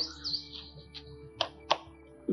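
Small birds chirping faintly, under a faint steady low hum, with two short clicks about a second and a half in.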